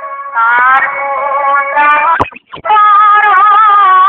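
Background music: a sustained, wavering melody line that breaks off briefly a little past two seconds in, then resumes.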